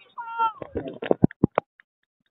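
High-pitched shouted calls from young soccer players, the first one falling in pitch, followed about a second in by a quick run of sharp knocks.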